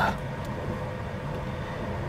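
Steady low rumble inside a car's cabin, with a faint steady hum above it.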